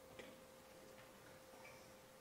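Near silence: room tone with a faint steady hum and two faint clicks, a fifth of a second in and about a second in.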